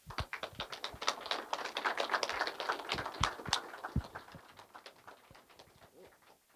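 Audience applauding: many distinct, irregular hand claps that start at once, are thickest over the first three seconds or so, and thin out and fade over the last two.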